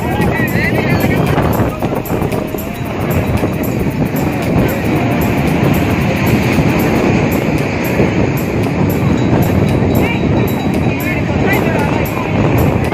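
Waves breaking and washing up a sandy beach with wind on the microphone, a steady dense rush, mixed with the voices of people in the surf and music.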